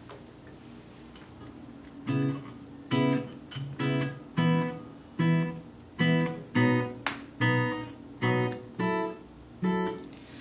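Acoustic guitar strummed in a steady rhythm, a chord stroke about every half second to second, starting about two seconds in after a quiet opening.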